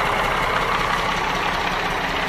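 Mack Granite CV713 truck's Mack AI-427 diesel engine idling steadily.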